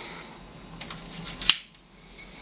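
A single sharp switch click about one and a half seconds in, over a low steady background of running equipment, as the sputtering setup is switched off. The background noise drops away briefly right after the click.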